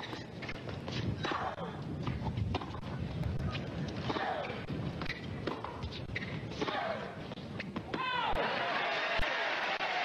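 Tennis rally on a hard court: the ball is struck back and forth about once a second, with sharp racket hits and short gliding squeaks between them. About eight seconds in the point ends and the crowd applauds.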